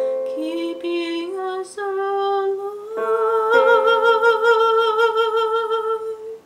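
A digital keyboard plays piano chords while a woman sings over it. Her voice moves through several notes, then holds one long note with wide vibrato from about three seconds in, over fresh chords.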